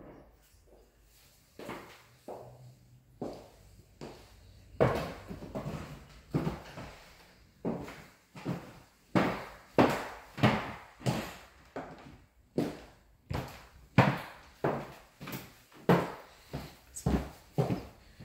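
Footsteps on a hardwood floor: a few faint knocks at first, then steady walking from about five seconds in, roughly two steps a second.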